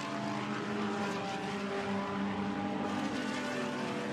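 GT3 race cars' engines running at speed on track, a steady, even engine note whose pitch drifts only slightly.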